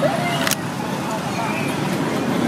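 Busy street ambience: steady traffic noise under background voices, with a single sharp click about half a second in.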